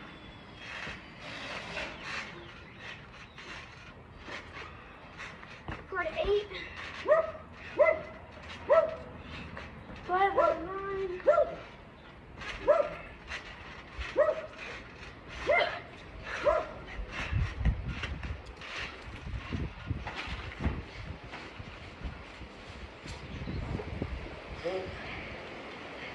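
A dog barking in a run of about a dozen short barks, starting about six seconds in and stopping about seventeen seconds in, over scattered light knocks and thumps.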